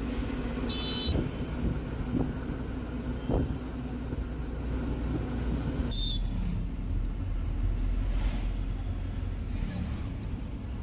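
Steady engine hum and road rumble heard from inside a moving vehicle in traffic. A short high-pitched beep sounds about a second in, and the rumble changes character about six seconds in.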